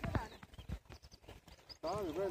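A brief voice at the start, then a few scattered soft clicks and knocks over faint background noise.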